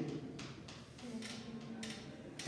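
Quiet room tone with a few faint clicks.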